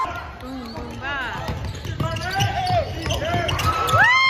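Basketball dribbled on a hardwood gym floor, with sneakers squeaking in short high chirps, the loudest near the end.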